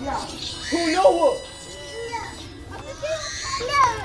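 Indistinct voices of children and adults calling out, with a loud cry about a second in and a rising call near the end.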